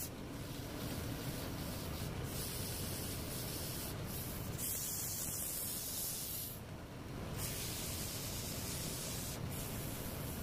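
Sandpaper held against a large wooden rolling pin spinning on a wood lathe: a steady hiss over the lathe's low running hum. The hiss breaks off briefly a few times, for nearly a second about seven seconds in.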